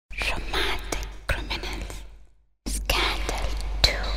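Breathy whispering in two stretches, broken by a brief silence about two and a half seconds in, over a low hum.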